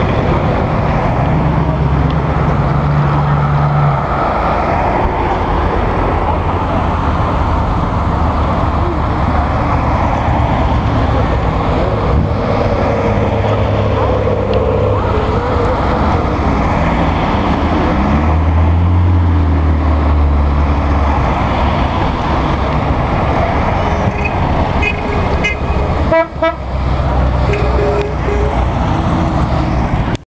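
A line of classic cars driving past one after another: engines running and tyres on the road, with louder engines passing near the start and again just past halfway. Car horns toot and voices are heard in the background.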